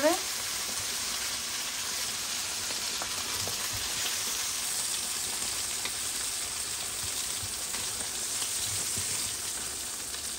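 Fried rohu fish-head pieces sizzling in oil in a frying pan: a steady hiss with faint crackles.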